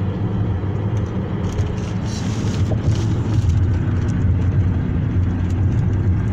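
Steady road noise heard inside a car driving at highway speed: engine and tyres make a continuous low drone.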